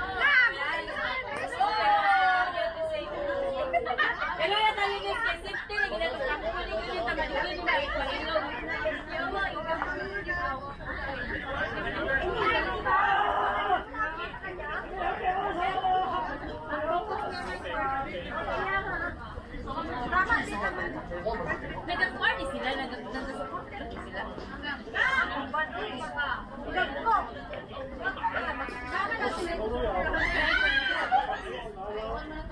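Players' voices on a ball field: several people chattering and calling out at once, with a long shout falling in pitch near the start.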